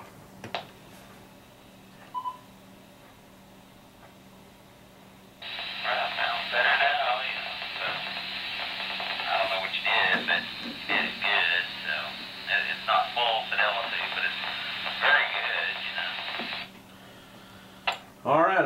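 Another ham's voice coming over the repeater through the handheld radio's small speaker, thin and band-limited, cutting in and out abruptly as the squelch opens and closes: a reply to the call for a signal check on the new microphone. A short beep sounds about two seconds in, before the reply.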